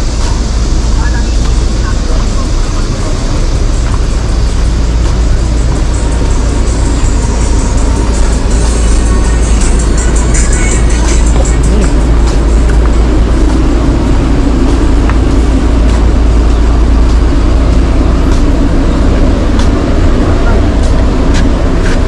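Busy street-market ambience beside a road: traffic and indistinct voices with music, under a steady heavy low rumble.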